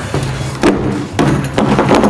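Background music with a steady bass line, with a sharp knock about two-thirds of a second in and a second hit a little past the midpoint.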